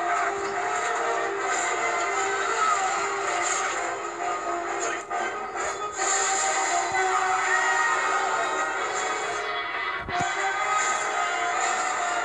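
Dramatic film soundtrack music playing from a television's speaker, sustained and dense, with a brief break about ten seconds in.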